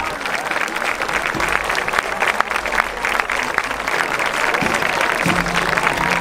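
Crowd applauding: many hands clapping in a dense, steady patter.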